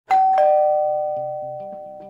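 Two-note ding-dong chime, a higher note then a lower one about a third of a second later, both ringing out and fading slowly over soft background music.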